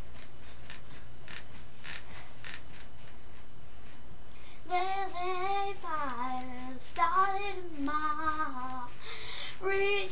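A girl singing alone without accompaniment, starting about halfway through with held notes that slide up and down; before that only faint clicks and rustling.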